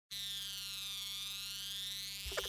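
A steady, high-pitched electronic tone over a low hum, dipping slightly in pitch near the middle and rising back.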